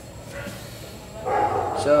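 A young man's voice: after a second of quiet, a louder vocal sound leads into a drawn-out "so" that falls in pitch near the end.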